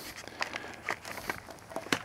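Soft rustling and scattered light clicks of potting soil and plastic nursery pots being handled, with a sharper tap near the end as a pot is set down.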